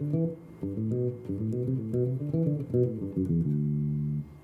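Squier Classic Vibe '60s electric bass with nickel-plated roundwound strings, played fingerstyle and unaccompanied: a quick melodic run of single notes, ending on one held note that rings on near the end.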